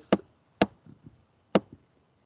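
Three sharp, dry clicks, about half a second and then a second apart, from the computer input device used to draw annotations on the slide.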